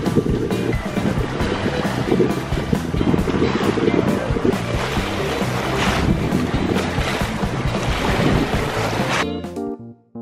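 Harbour waves slapping and splashing against a concrete sea wall, with wind buffeting the microphone, under background music. About nine seconds in the water and wind cut off, leaving piano music alone.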